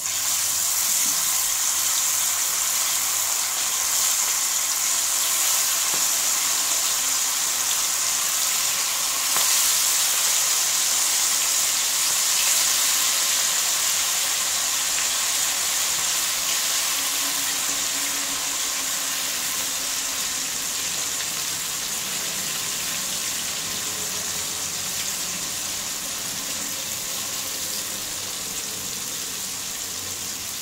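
Marinated chicken pieces deep-frying in hot oil, a dense steady sizzle that starts abruptly as the pieces go into the oil and eases slowly over the following half minute.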